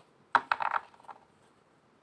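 A deck of tarot cards being shuffled by hand: a quick cluster of card flicks and slaps about a third of a second in, followed by a couple of lighter ticks.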